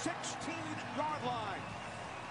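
Faint football play-by-play commentary from a TV broadcast, a few words about a second in, over a steady low background haze.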